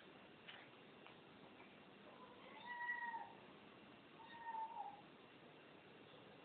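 A domestic cat meowing twice, two short meows about two seconds apart, the second dropping in pitch at its end.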